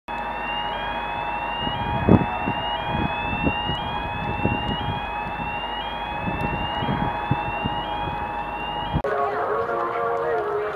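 A siren-like electronic tone sweeping upward and starting over about once a second, over a steady hum and irregular knocks. It all cuts off suddenly near the end.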